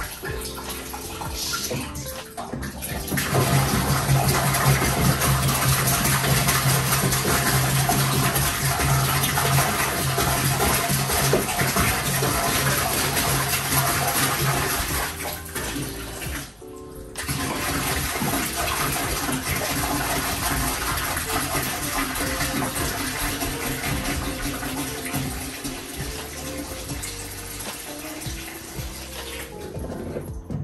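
Water pouring from a large plastic jug into a laundry sink to rinse clothes. It comes in two long pours with a short break about halfway.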